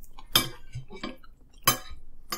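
Metal forks clinking and scraping against dinner plates as spaghetti is twirled, with two sharper clinks, one about a third of a second in and one near the end.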